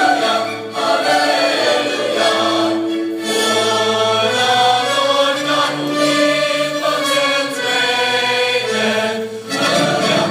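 A choir singing long held notes.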